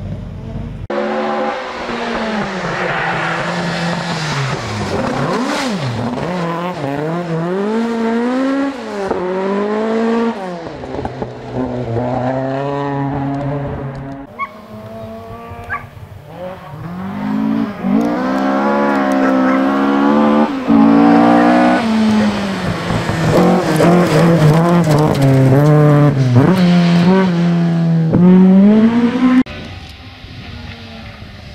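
Ford Escort Mk1 rally car's engine revving hard on a gravel stage, its pitch climbing and falling again and again through gear changes. The sound comes in several separate passes cut together, quieter for a few seconds around the middle.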